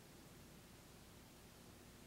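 Near silence: room tone with faint hiss and a low hum.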